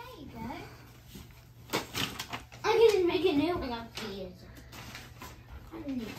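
A young child's high-pitched voice vocalizing for about a second midway, with a few sharp knocks and clicks of toys around it.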